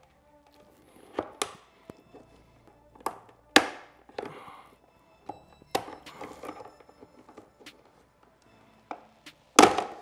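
Side-mirror glass of a BMW G80 M3 being pried with a plastic trim tool: a series of sharp clicks and creaks as its retaining clips are worked loose, with the loudest snap near the end as the clips let go.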